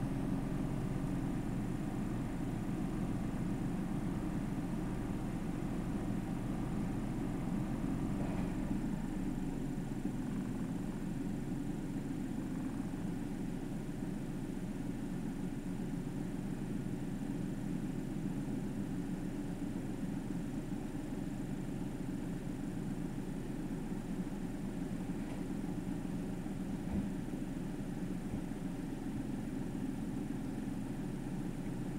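Steady low drone of a stationary car running, heard from inside the cabin, with a single brief soft knock near the end.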